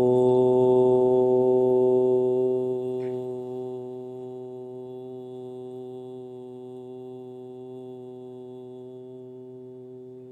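A man chanting a long, closing 'Om', holding the humming 'mm' at one steady pitch with closed lips; loud for the first couple of seconds, then fading away gradually.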